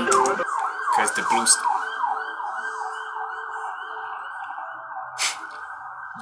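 Police car siren in a fast rising-and-falling yelp, several sweeps a second, fading away over the few seconds. A short sharp noise sounds near the end.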